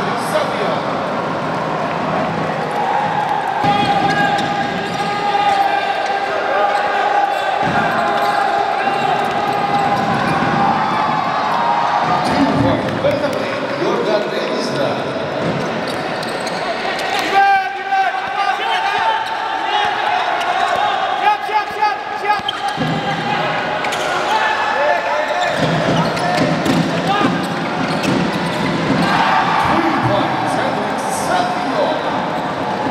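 Basketball dribbled on a hardwood court during live play, with voices in the hall and a steady held tone underneath.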